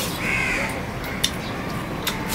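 A crow cawing once near the start, followed by a single sharp click a little past the middle.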